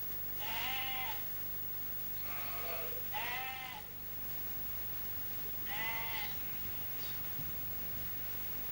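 Sheep bleating: four short bleats, two of them back to back in the middle.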